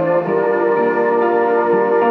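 Live band playing slow ambient music: held synthesizer chords with no drums. The chord changes about a quarter second in and again near the end.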